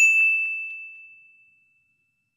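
Notification-bell sound effect: a single high ding that starts suddenly and rings out, fading away over about a second and a half.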